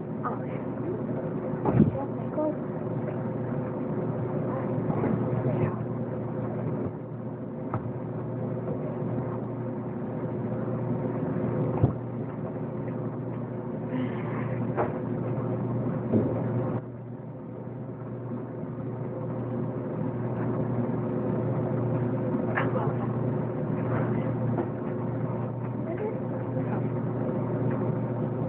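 A steady low mechanical hum with a few sharp knocks, the loudest about two seconds in and about twelve seconds in.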